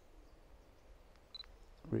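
A camera held to the eye giving a faint click and a short high beep about a second and a quarter in, over quiet background air.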